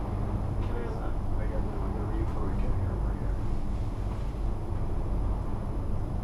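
Steady low rumble of ride noise inside a moving Leitner 3S gondola cabin on its downhill run, with faint passenger voices underneath.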